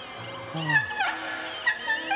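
Soundtrack of a late-1980s Russian children's film played from a VHS tape: eerie music of held tones, with short sliding, downward-falling pitched sounds.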